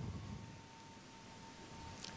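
Quiet room tone in a function room, with a faint steady hum held on one pitch.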